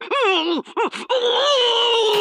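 Cartoon wolf's voice yelping and wailing in pain: a few short cries that swoop in pitch, then a longer cry sliding slowly down.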